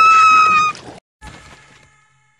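A high-pitched cartoon scream in a girl's voice, held on one steady pitch, that cuts off about three-quarters of a second in, leaving only faint sound after it.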